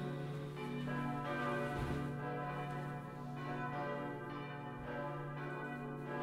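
Bells ringing, struck one after another about once a second, each tone ringing on and overlapping the next over a steady low hum.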